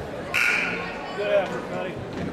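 Basketball gym crowd chatter, cut through about a third of a second in by a short, shrill referee's whistle blast lasting about half a second, followed by a brief raised voice.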